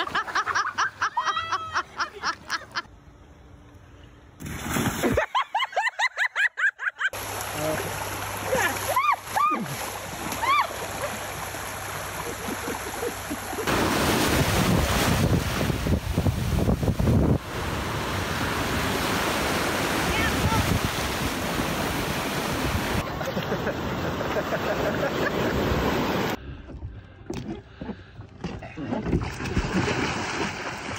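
Laughing voices over water splashing, then a steady wash of surf breaking on a beach for about the middle third, with a quieter spell of splashing near the end.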